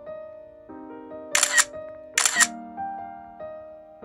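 Two camera-shutter clicks, each a quick double click, about a second apart, over gentle piano background music.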